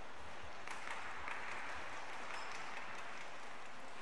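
Spectators clapping and applauding, breaking out about a second in and carrying on.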